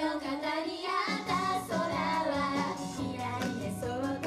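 Japanese idol group singing a pop song live into handheld microphones, girls' voices over a recorded backing track through PA speakers.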